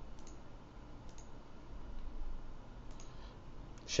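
A few faint computer mouse clicks, spaced irregularly, as points are placed with a pen tool, over a low steady hum.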